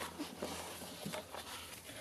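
Faint rustling and a few light taps as baker's twine is wrapped around a cardstock scrapbook page and handled.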